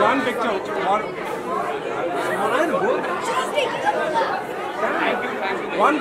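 Crowd chatter: many people talking and calling out over one another at once, with no break.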